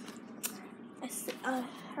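Close handling noise of a phone rubbing against hair and bedding, with a sharp click about half a second in and a short swish after one second, then a girl says a couple of syllables near the end.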